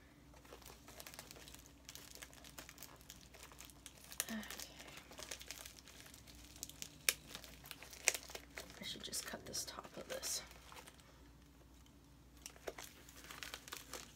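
Paper and plastic packaging crinkling and tearing in short, irregular crackles as a small mailed parcel is worked open by hand. The crackles ease off about eleven seconds in, then pick up again briefly near the end.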